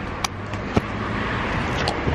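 Steady rumble of road traffic, with a few short clicks from the camera being handled.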